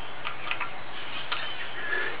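A few faint, irregular clicks from the KY-68's spring-loaded variable storage selector toggle switch being worked by hand, over a steady background hiss.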